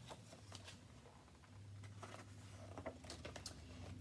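Pages of a hardcover picture book being turned and handled: several faint paper rustles and soft taps spread through, over a faint low hum.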